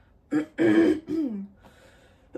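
A woman clearing her throat: a rough burst about half a second in, ending in a short voiced sound that falls in pitch.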